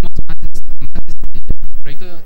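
Loud, rapid stuttering clicks, about ten a second, from a fault on the microphone's audio, burying the speaking voice. It cuts off suddenly near the end.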